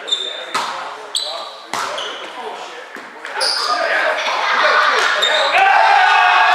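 Indoor volleyball rally: several sharp hits of the ball in the first two seconds, with short high squeaks, echoing in a large gym. From about halfway through, players' shouts and voices grow louder and carry on.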